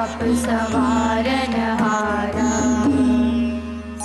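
Young voices singing Gurbani in a raag, melody gliding and ornamented, over a steady drone from string instruments such as the tanpura; the singing trails off near the end while the drone holds.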